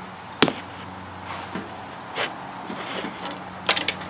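Knocks and clunks of a person climbing into the seat of a small garden tractor: one sharp knock about half a second in, a duller thump around two seconds and a few quick clacks near the end, over a steady low hum.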